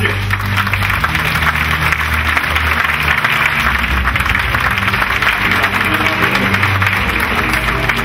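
Audience applauding over background music with a steady bass line.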